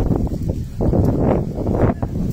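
Wind buffeting the microphone, a low rumble that surges in uneven gusts.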